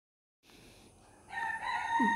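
A single drawn-out pitched call, nearly steady in pitch, starting about a second and a quarter in and running on past the end, over faint hiss.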